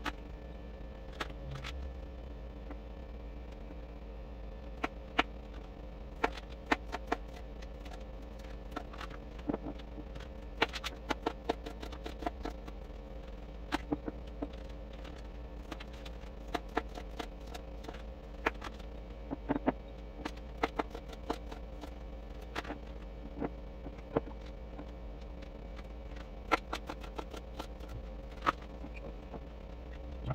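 A kitchen knife slicing cucumbers on a thin plastic cutting mat: a series of sharp, irregular chops and taps, sometimes in quick clusters, over a steady low hum.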